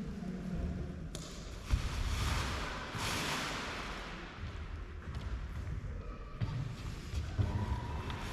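Paraglider wing being handled and folded: fabric rustling in a long swell, with a thump about two seconds in and another near the end.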